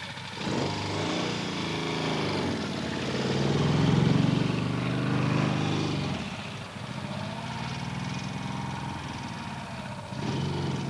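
A Triking three-wheeler's V-twin engine pulling away and accelerating. It rises to its loudest about four seconds in, drops off, then builds again more quietly near the end.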